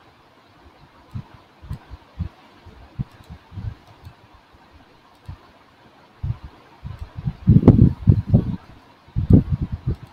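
Soft, low thumps come at irregular intervals over a faint steady hiss, bunching together and growing louder in the last few seconds.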